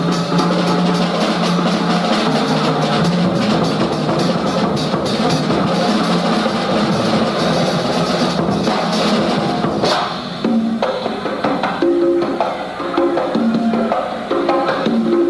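Live jazz combo playing, driven by drum kit and congas. About ten seconds in the fuller sound drops away, leaving spaced, pitched drum and conga hits.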